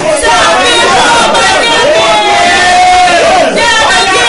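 A man and a woman praying aloud at the same time, loud, their voices overlapping.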